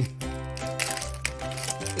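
Background music, with the foil wrapper of a Pokémon booster pack crinkling as it is torn open by hand.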